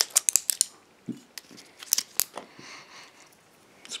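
Screw cap of a glass bottle twisted open, its breakaway seal ring giving a rapid run of sharp clicks at the start, then a few single clicks over the next couple of seconds.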